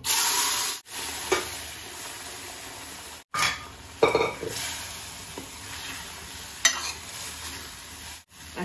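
Boiled urad dal poured into hot ghee and spices in a steel kadhai, with a loud sizzle as it hits the fat. After that the pan sizzles steadily while a steel ladle stirs the dal, knocking sharply against the pan a few times.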